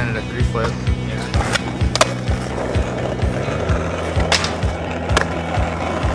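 Skateboard sounds over a music track with a steady beat about twice a second: sharp board clacks about two seconds in and again twice near the end, with wheels rolling on concrete.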